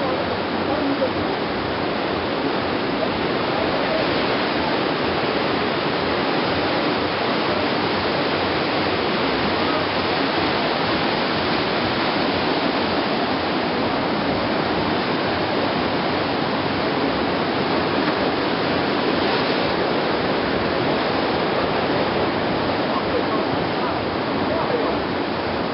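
Ocean surf breaking and churning among rocks, a steady, even rush of water.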